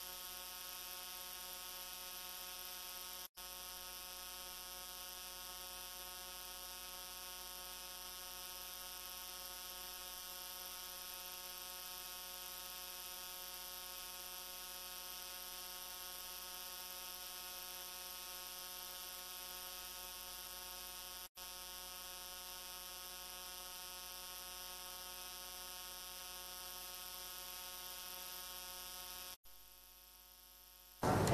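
Steady electrical hum and buzz with a hiss above it. The sound cuts out for an instant three times: a few seconds in, about two-thirds of the way through, and just before the end.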